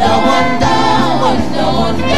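Gospel praise singing by a group of voices, with live band accompaniment, loud and continuous.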